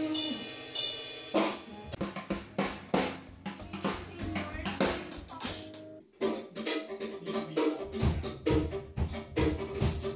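Band music: a held sung note fades out, then a drum kit plays a run of sharp snare and cymbal strikes. After a brief drop about six seconds in, a steady beat with bass-drum hits picks up near the end.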